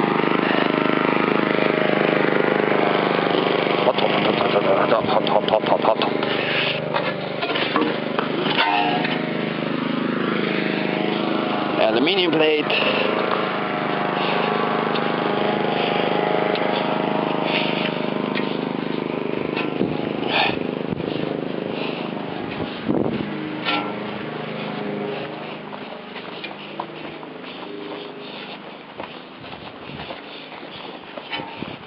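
A small engine running steadily, fading away over the last several seconds.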